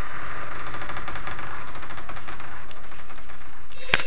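Steady, dense, rapid rattling noise, with a sharp crack just before the end.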